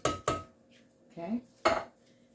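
Sharp metal clanks of an emptied tin can knocking against the rim of a metal cooking pot: two quick knocks with a brief ring at the very start, and one more knock near the end.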